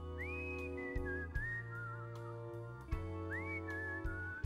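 A man whistling a melody into a microphone, swooping up into high notes twice and wavering with vibrato, over sustained low chords from the band and sharp percussion hits about once a second.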